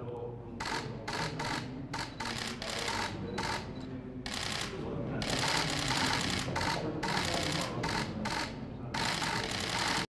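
Many press cameras' shutters firing in rapid bursts of clicks, sparse at first and then almost unbroken from about four seconds in.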